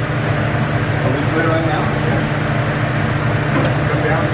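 Electric hydraulic pump motor of a two-post vehicle lift running with a steady hum as the lift raises.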